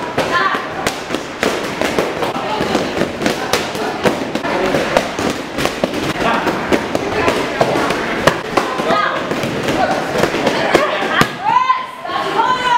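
Martial arts class training: punches and kicks striking pads in a stream of sharp, irregular cracks, with voices and shouts over them, a loud shout near the end.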